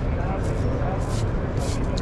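Busy exhibition-hall background: a steady low rumble with voices in the hall.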